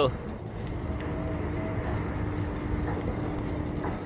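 Wind on the microphone and tyre rumble from a moving bicycle, a steady low noise, with a faint steady hum running under it.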